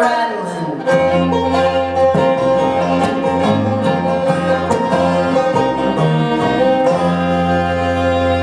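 Bluegrass string band playing without vocals: fiddle drawing long bowed notes over rapid banjo picking, strummed acoustic guitar and upright bass. The bass comes in about a second in.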